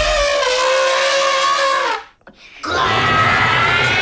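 An elephant trumpeting twice, loud: a long call of about two seconds whose pitch sinks slightly, then after a short break a second, higher-pitched call.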